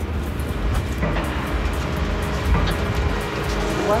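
Background music over a steady low rumble.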